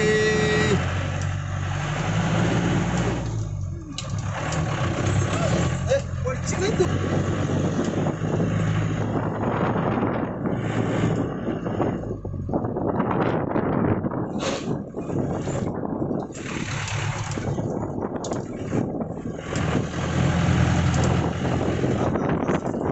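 A Mahindra Major jeep's 2.5-litre four-cylinder diesel engine pulling the jeep along a road, heard from inside the cabin with road and wind noise. The engine note shifts in pitch near the start and again near the end.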